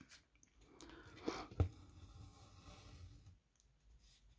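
Faint rustle of embroidery thread being drawn through 14-count Aida cross-stitch cloth, with one sharp click about a second and a half in.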